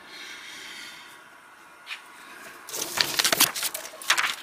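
Faint room hiss, then about three seconds in a burst of crackly rustling as a sheet of paper is handled and slid aside by hand.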